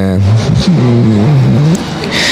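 A motor vehicle engine revving repeatedly close by, its pitch rising and falling several times over about a second and a half.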